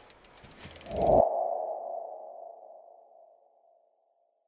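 Logo-sting sound effect: a rapid run of clicking ticks over a rising low whoosh, cut off about a second in by a single ringing ping that fades away over about two seconds.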